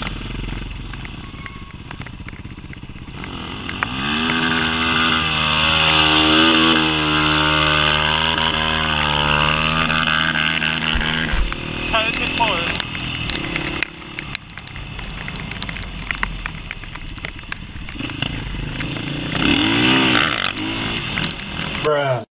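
Supermoto motorcycle engine pulling hard, rising in pitch and then held at high revs for several seconds before the throttle closes suddenly. Near the end the revs rise and fall once more. Wind rushes over the riding camera throughout.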